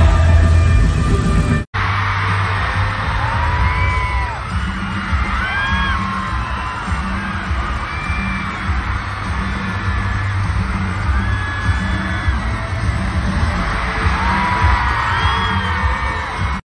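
Live arena concert recorded from the audience: loud pop music with a steady bass beat under a crowd screaming and cheering, with many single shrill screams rising and falling above it. The sound cuts out briefly just under two seconds in as one clip gives way to another.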